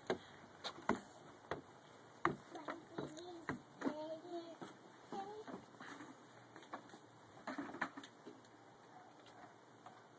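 Children's footsteps thudding on wooden porch steps, scattered sharp knocks in the first few seconds and again a few seconds later, with a faint child's voice a couple of times in the middle.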